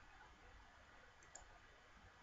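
Near silence: faint room tone with a single faint computer mouse click a little past halfway through.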